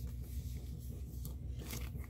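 Paper inner sleeve and cardboard album jacket of a vinyl LP rustling and scraping as they are handled, with brief brushing sounds in the second half, over a steady low hum.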